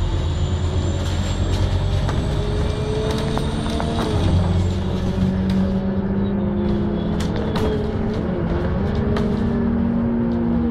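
Bus heard from inside while it drives: a steady low engine rumble, with drivetrain tones that slowly rise and fall in pitch as it changes speed. Scattered clicks and rattles come from the cabin.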